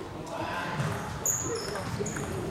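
Table tennis ball served and rallied: light clicks of the celluloid ball on the table and the bats, with a couple of short high squeaks from players' shoes on the wooden hall floor.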